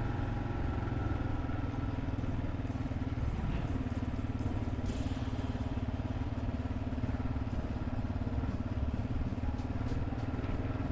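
Kawasaki KLR650's single-cylinder engine running steadily, heard from on the bike as it rides along. Its note shifts briefly about three seconds in.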